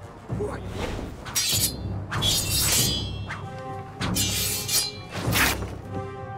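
Sword-fight sound effects: steel blades clashing and swishing in about four sharp bursts, some leaving a metallic ring, over orchestral film music.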